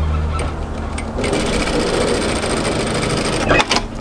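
Industrial lockstitch sewing machine stitching an edge seam across a folded fabric tab. The stitching runs steadily for about two seconds from a second in, then stops, followed by a few sharp clicks near the end.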